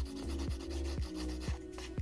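Hand nail file rasping across an acrylic nail overlay in sweeping strokes, refining and blending its surface, with soft background music and a steady beat underneath.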